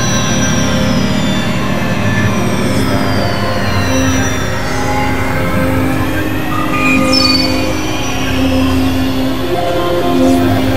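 Experimental synthesizer drone music: a dense low drone under held tones, with high whistling tones gliding slowly down in pitch and, from about the middle, others gliding up, giving a squealing, metallic sound.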